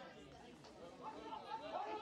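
Faint, indistinct chatter of people's voices, with no clear words.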